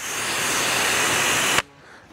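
A steady hiss of liquid spraying from a nozzle, about two seconds long, cutting off sharply.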